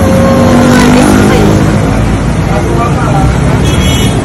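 Loud, steady street noise of vehicle engines running at a curbside, with people talking over it.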